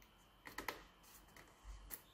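Faint clicks and light rustles of a small strip of tape being handled and pressed over the chip of a toner cartridge's plastic side.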